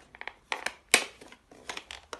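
Flat-blade screwdriver prying and scraping at the plastic housing of a Dyson cordless vacuum's motorised brush head, working a clipped-in part loose. A series of short sharp clicks, the loudest about a second in.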